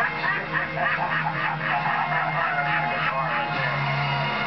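Music playing from a television in the room, a wavering melody over held low notes.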